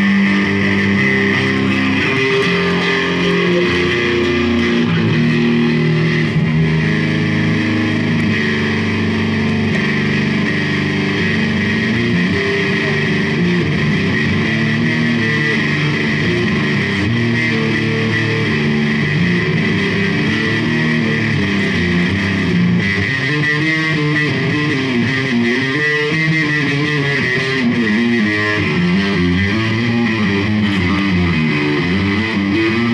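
Electric bass guitar played solo through an amplifier: held low notes stepping from pitch to pitch, turning into quicker runs of notes in the last quarter.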